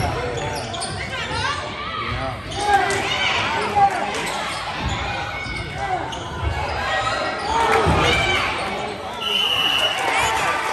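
Basketball game sounds in a large gym: a ball bouncing on the hardwood floor and sneakers squeaking as players move, under spectators' voices. Near the end a short, steady high whistle blast.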